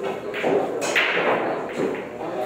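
Pool balls knocking against each other and the table as they are gathered and racked: a few separate knocks, the loudest about a second in.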